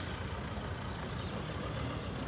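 Ford Endeavour's 3.2-litre diesel engine idling with a steady low rumble.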